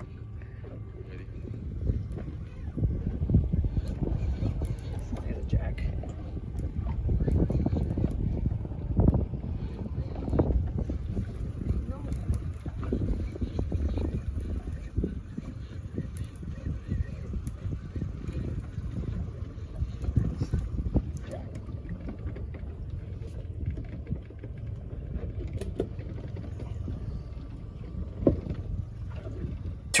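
Uneven low rumble of wind buffeting the microphone and water moving around a boat's hull at sea, swelling and easing, louder in the first third.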